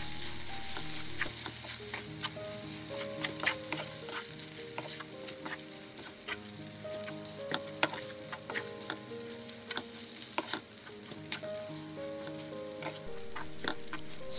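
Kimchi and cooked rice sizzling in a frying pan as a spatula stirs and tosses it, with frequent sharp clicks and scrapes of the spatula against the pan.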